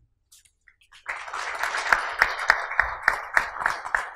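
Audience applauding, starting about a second in, with louder claps standing out about three times a second.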